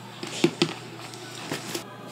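A few light taps: two close together about half a second in and a weaker one about a second and a half in, over a faint steady hiss.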